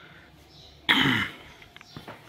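A person coughs once, a short sudden burst about a second in, over otherwise quiet room tone.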